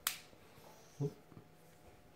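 A sharp plastic click as the phone's back cover is pressed and snaps into place, followed about a second later by a brief low sound.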